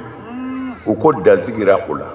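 A man's voice holding one low, steady note for about half a second, like a drawn-out hum, then breaking into rapid, emphatic speech.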